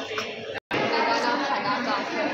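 Indistinct chatter of several people talking in a gallery hall. The sound cuts out completely for an instant a little over half a second in.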